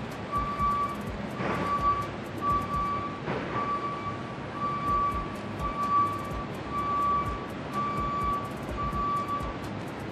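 A high electronic beeper sounding about once a second in steady, even beeps over the general noise of a warehouse store, with a couple of brief rustles in between.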